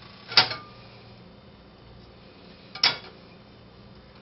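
Two sharp knocks of kitchen items being handled, about two and a half seconds apart, the first with a brief ring after it.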